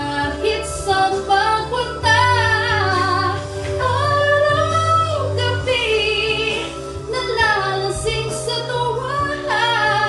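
A woman singing into a corded handheld microphone over backing music, holding long notes with a wavering vibrato.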